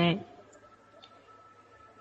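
A woman's voice ends a word, then a pause of faint room tone with a low steady hum and two faint clicks.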